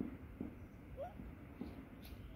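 Monkey giving a few short, low calls about half a second apart, with a brief rising squeak about a second in.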